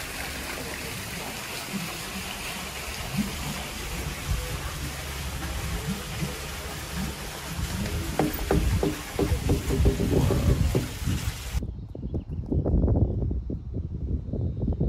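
Steady rushing of running water, with some brief indistinct pitched sounds underneath toward the end. The rushing cuts off abruptly about three-quarters of the way through, leaving a lower, uneven background.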